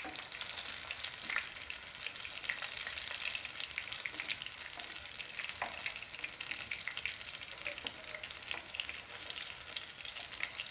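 Baby potatoes frying in hot oil in a nonstick pan: a steady crackling sizzle, with a wooden spatula now and then scraping and knocking in the pan as the potatoes are turned.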